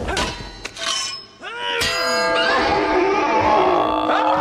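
Action-film fight soundtrack: a few sharp hits in the first second, a pitch-bending vocal cry about a second and a half in, then music with several held notes.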